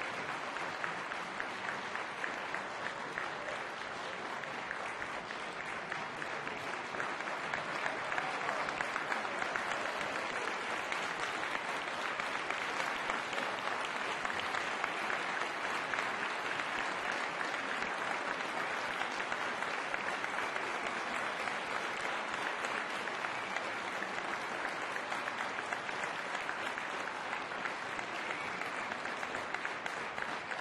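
Audience applauding steadily, a dense patter of many hands clapping that grows a little louder about eight seconds in.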